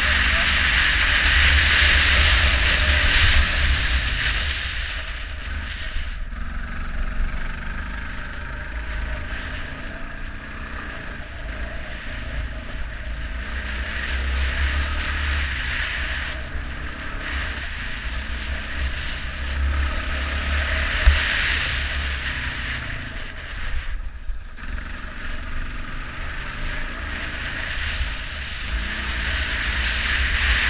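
ATV engine running under way on a dirt trail, rising and falling with the throttle and easing off briefly a few times, with a heavy wind rumble on the microphone.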